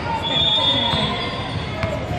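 Basketball being dribbled on a hardwood gym floor amid echoing background voices in the hall. A faint, steady high tone sounds for about a second near the start.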